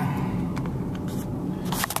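Steady low rumble of a car's engine and tyres heard from inside the cabin while driving, with a few faint ticks.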